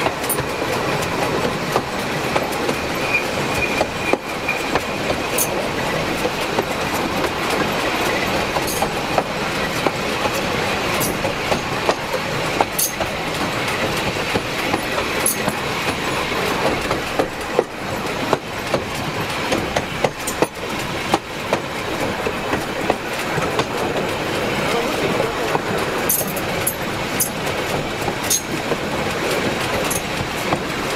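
Wheels of a narrow-gauge railway wagon rolling over the track, heard close up from beneath the wagon: a steady rattling rumble with irregular clicks over rail joints. A brief squeal from the wheels about three seconds in, and short high squeaks now and then.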